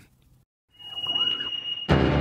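A high, steady whistle-like electronic tone about a second long over a faint wavering sound, the opening of a podcast's intro sting, cut off near the end by the sudden loud start of the intro music.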